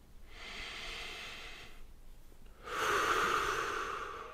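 A nervous young man taking a deep breath: a long breath in, then a louder breath out near the end.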